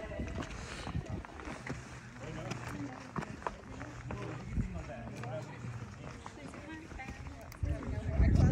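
Footsteps and shoe scuffs on sandstone as a person climbs a rock slope, a scatter of short clicks and scrapes, with other people's voices talking faintly in the background.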